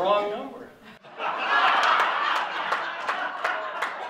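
A man's voice for a moment, then, about a second in, an audience laughing together with scattered clapping.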